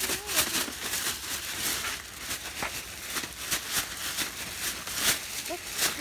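Thin plastic shopping bag rustling and crinkling as it is handled, a dense run of crackly clicks.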